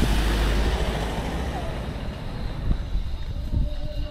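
Pickup truck driving past close by, its engine rumble and tyre noise loudest at first and fading as it moves away.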